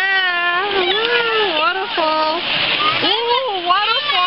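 A high-pitched voice making long, sliding, wordless sounds, a few held notes with short gaps between, over water splashing in a stream, which is loudest about midway.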